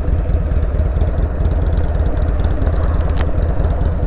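Harley-Davidson Sportster 883's air-cooled V-twin running at low revs, a steady rapid throb, while the bike rolls slowly. A single short click comes about three seconds in.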